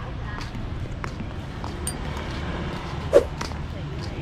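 Outdoor background with a steady low rumble, faint voices and scattered light clicks. One short, loud sound stands out about three seconds in.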